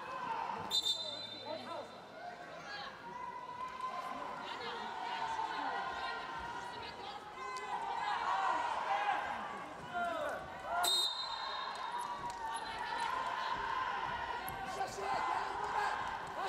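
Arena crowd voices and shouting, with two short referee's whistle blasts, one about a second in and one about eleven seconds in, the second starting the wrestling.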